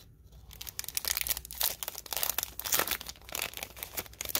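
Clear plastic team bag crinkling and crackling in the hands as its sealed top flap is pulled open, a dense run of irregular crackles starting about half a second in.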